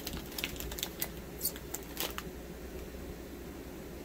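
A blind-bag wrapper being torn open and handled, giving a run of small sharp crackles and clicks in the first two seconds, then quieter handling.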